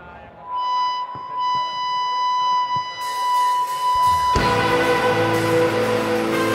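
Live rock band opening a song: a single high note held steady for about four seconds, with a few faint clicks beneath it and a hiss building from about three seconds in. About four seconds in, the full band comes in loud.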